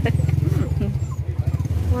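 Low, steady engine rumble of a nearby motor vehicle with fast, even pulsing, and faint voices in the background.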